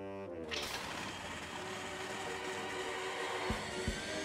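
Cartoon soundtrack: a falling pitched glide ends just after the start, then a sudden rushing noise about half a second in runs under the music, with a steady drum beat coming in near the end.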